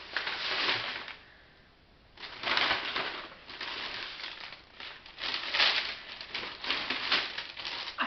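Brown paper takeaway bags rustling and crinkling as they are handled and an inner paper bag is pulled out of the carrier. The rustling pauses briefly about a second in, then comes back in repeated bursts.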